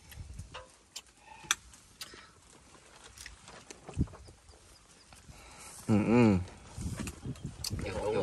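Light clicks and knocks of beer cans, cups and dishes during a meal, a few seconds apart, then a man's loud drawn-out "ừ" about six seconds in.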